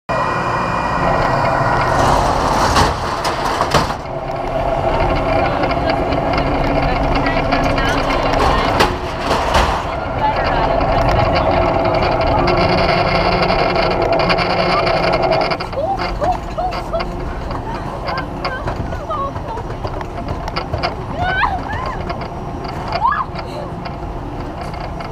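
Steady mechanical hum with a constant tone from a mechanical bull ride's machinery, with voices in the background; it drops in level about two-thirds of the way through.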